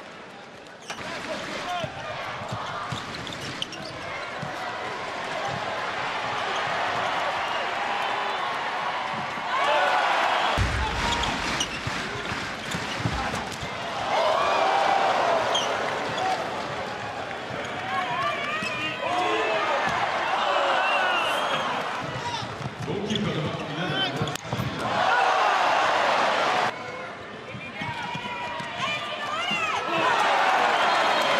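Handball match sound from court level: a handball bouncing on the indoor court over steady arena crowd noise, which swells loudly several times.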